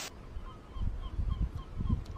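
Gull calling, a quick run of short faint notes about four a second, over a low rumble of wind buffeting the microphone.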